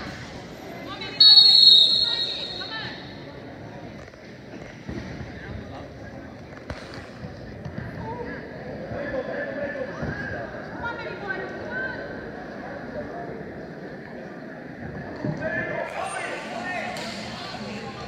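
A referee's whistle blows once, sharp and loud, about a second in, signalling the start of wrestling from the standing position. Indistinct shouting and chatter from spectators follows, with a few thumps.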